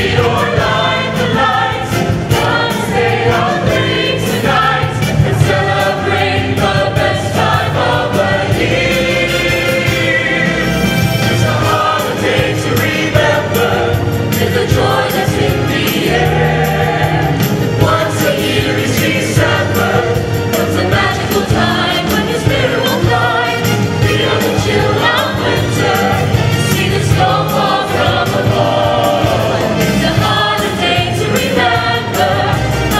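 Mixed show choir of men and women singing together, amplified through stand microphones, with no break.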